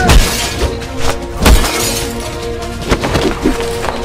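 Dramatic film soundtrack: a sustained droning score punctuated by heavy low booming hits about every second and a half, opening with a loud shattering crash.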